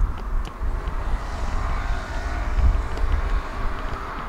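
Outdoor wind gusting against the microphone, with a steady distant vehicle rumble underneath.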